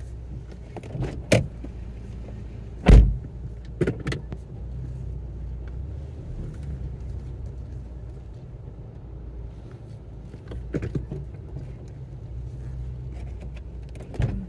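Steady low hum of an idling car heard from inside, broken by a few sharp knocks, the loudest about three seconds in.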